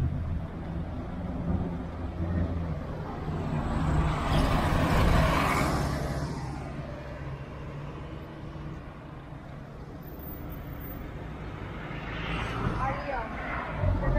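Street traffic: a steady low engine rumble, with one vehicle passing close in a swell of engine and tyre noise about four to six seconds in, and another vehicle approaching near the end.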